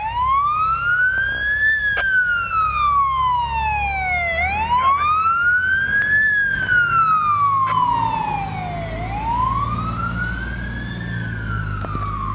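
Fire engine siren wailing, its pitch sweeping up and then slowly down about every four and a half seconds, three times, over the low rumble of the truck's engine as it moves off on a call.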